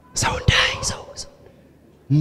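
A man's breathy, whispered speech close to a handheld microphone, lasting about a second, with a pop on the microphone partway through.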